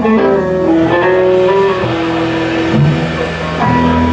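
Live rock band playing: electric guitar over bass, keyboard and drums, with the guitar notes bending and sliding in pitch.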